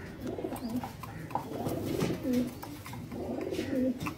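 Fantail pigeon cooing: a run of low coos, two of them louder, a little past the middle and again near the end.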